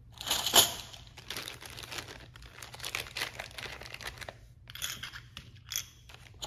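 A paper instruction sheet and a clear plastic bag being handled, with irregular crinkling and rustling. The loudest crackle comes about half a second in, with more bursts near the end.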